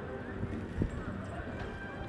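Pedestrian street ambience: passers-by talking, footsteps on paving stones, and one short, louder knock a little under a second in.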